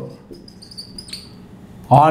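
Whiteboard marker squeaking faintly in a few short, high strokes as a word is written on the board.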